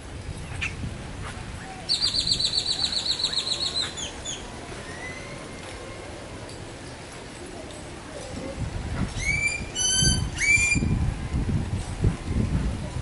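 A bird singing: a fast, high trill lasting about two seconds, starting about two seconds in, then a few short rising chirps near the end. A low rumbling noise comes in over the last few seconds.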